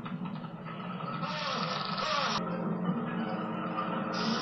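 Soundtrack of an old low-budget horror film playing on a TV: low, sustained film-score music under a steady hiss. About halfway through, a brighter burst of noise cuts off suddenly.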